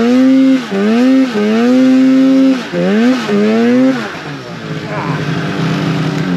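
Snowmobile engine revving hard through several throttle bursts as the sled pushes through deep powder, the pitch climbing and holding, then dipping between bursts. After about four seconds it eases off to a lower, quieter, steadier note.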